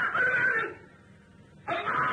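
A man's voice raised high and drawn out in an impassioned sermon delivery, breaking off for about a second in the middle and starting again near the end.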